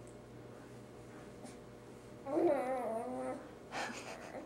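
A baby vocalizing: one drawn-out, wavering whine of about a second, starting a little past halfway, with a short breathy sound just after. Before it, only low room tone.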